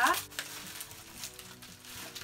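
Packing material rustling and crinkling as a tightly packed item is worked open by hand, with a few faint clicks, under faint background music.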